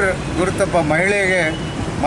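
A man speaking into a handheld news microphone, with a steady low hum of street noise behind.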